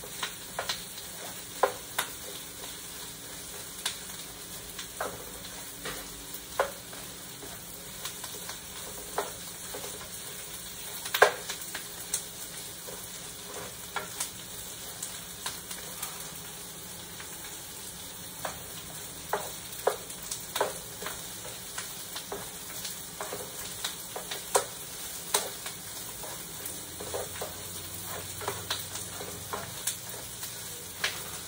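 Onions sizzling as they sauté in a nonstick frying pan, stirred with a plastic spatula that scrapes and taps against the pan every second or two; one knock about eleven seconds in is louder than the rest.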